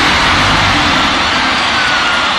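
A car doing a burnout, its engine held at high revs while the spinning tyres make a loud, steady rush of noise.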